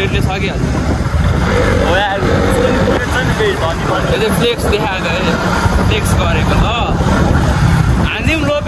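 Wind buffeting the microphone as a heavy, steady low rumble, with voices talking underneath, while riding along in the open.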